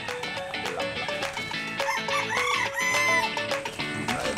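A rooster crowing once, about two seconds in, lasting about a second, over background music.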